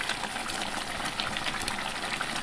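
Thick chicken curry simmering in a pan, bubbling with a steady run of small pops and crackles.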